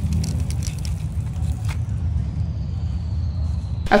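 Steady low wind rumble buffeting a phone microphone outdoors, with a few faint clicks in the first two seconds.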